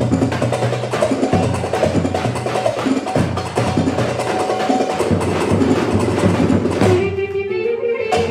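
Live Turkish Romani dance music from a band, with a dense percussion beat and a bass line. About seven seconds in the rhythm drops out and a single wavering held note is left.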